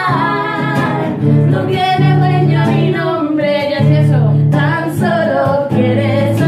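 Several women singing together, accompanied by a strummed acoustic guitar.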